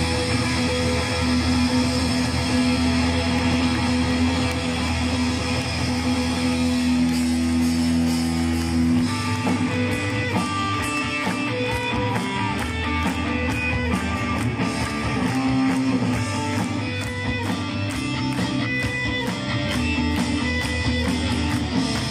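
Live rock band heard through an open-air PA: guitars and bass hold a long sustained chord, then about nine seconds in the drums come in with a steady beat and the guitar lines start moving.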